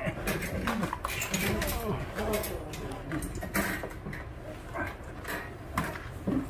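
Metal wire dog crate clicking and rattling as a dog is handled into it, under low indistinct voices.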